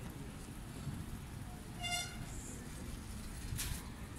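Outdoor street background noise: a steady low rumble, with one brief high-pitched toot about halfway through and a short hiss near the end.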